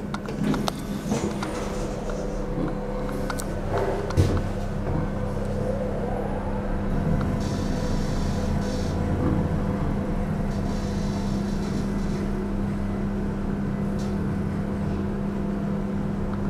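Mitsubishi traction service elevator car travelling down, with a steady low hum and running noise and a few clicks near the start. There is one sharp thump about four seconds in.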